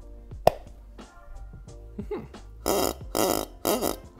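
A 3D-printed duck call fitted inside a hollow printed duck, blown in three short blasts over the last second and a half. A single sharp click comes about half a second in.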